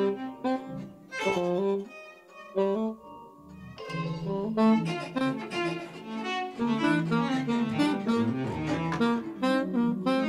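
Freely improvised jazz-like ensemble music: saxophone lines over keyboard and an EWI (electronic wind instrument) with a bowed-string-like tone, many overlapping notes shifting quickly. The texture thins out about two seconds in and grows busy again from about four seconds.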